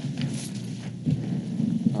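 A low rumbling noise with faint rustles in a pause between words.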